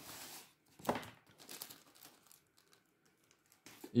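Cardboard box and plastic bags of fishing rigs rustling as the box is opened and the packets are handled: a rustle at the start, a sharper crackle about a second in, then a few small rustles.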